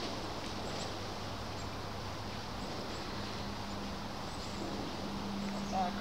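Steady outdoor background noise with a faint low hum that shifts a little higher about halfway through; no distinct event stands out.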